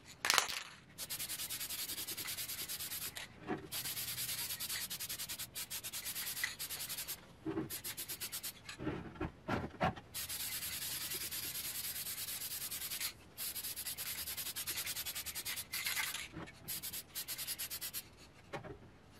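Aerosol can of black gloss lacquer spraying a light dust coat in repeated hissing bursts of about two to three seconds, with short pauses and a few brief knocks between bursts.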